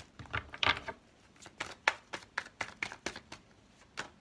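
A tarot deck being shuffled by hand: a quick, irregular run of crisp card snaps and flicks.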